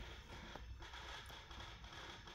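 Faint, irregular creaking from a Mazda Miata's throttle body with the ignition on and the engine off, a sound likened to an old door creaking in the wind.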